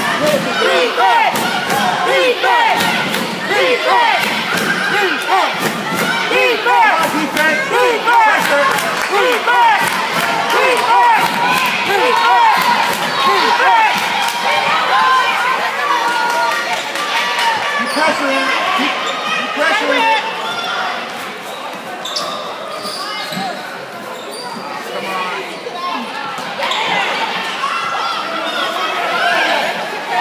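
Basketball bouncing on a hardwood gym floor amid many overlapping spectator voices talking and calling out in the hall. The crowd quiets somewhat for a few seconds past the middle, then picks up again.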